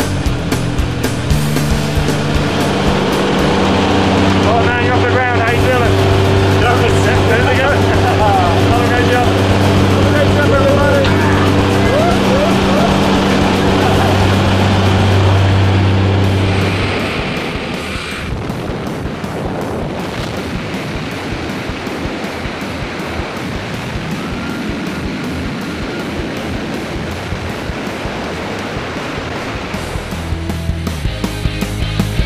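Background music with a steady beat and singing in its first half; at about 17 s the held low notes drop out and the song carries on more quietly.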